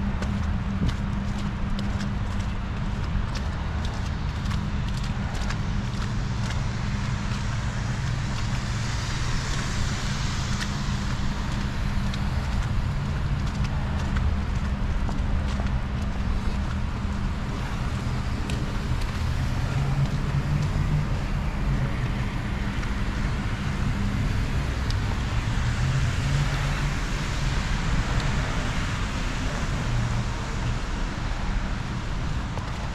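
Steady outdoor noise of wind rumbling on the microphone over city traffic, with light ticks of footsteps in snow during the first several seconds.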